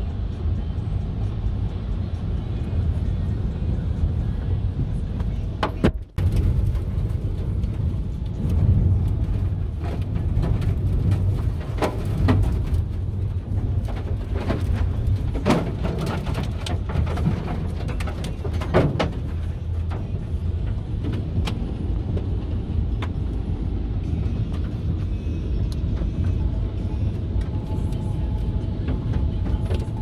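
Tornado-force wind roaring around a car in a low, steady rumble. Many sharp knocks from flying debris striking the car come in the middle stretch.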